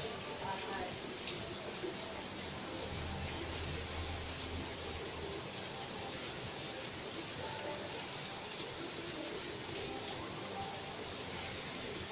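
Steady rain falling, an even hiss with no sharp impacts.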